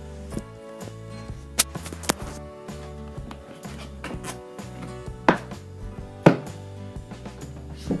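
Sharp knocks and clunks of a container being handled and opened, four louder ones spread through, over steady background music.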